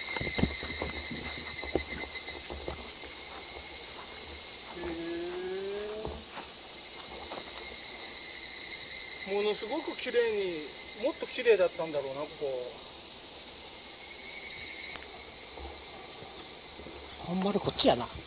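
Steady, loud, high-pitched shrill of insects in summer woodland, running unbroken throughout. Short stretches of voices come twice in the middle.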